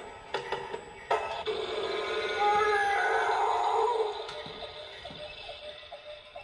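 Playskool Kota the Triceratops animatronic ride-on toy playing electronic music and sound effects from its built-in speaker, louder with wavering tones from about two and a half to four seconds in, and a few sharp clicks early on.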